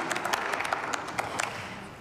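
Applause from a small group of people clapping, scattered hand claps that thin out and fade away toward the end.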